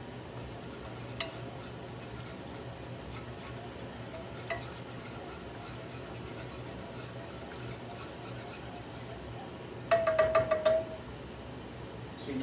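Metal spoon stirring sauce in a saucepan, with a few faint clinks over a steady low hum. Near the end comes a quick run of about six metal taps on the pan with a short ringing tone.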